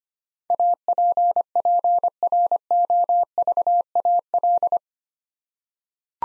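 Morse code sent at 25 words per minute as a single steady beep keyed into dots and dashes, spelling the word "APPROVAL" in eight letter groups over about four seconds. It is the repeat of the word just spoken, so the listener can check their head copy.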